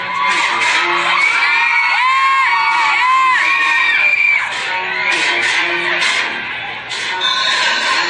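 A live hip-hop backing track with a beat plays through the stage PA, while the audience cheers and screams at a high pitch over it.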